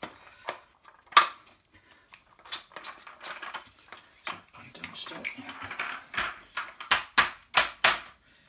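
Steel bars of an appliance stand sliding and clacking into its plastic corner pieces, with scraping in between. There is a sharp knock about a second in and a run of quick clicks near the end.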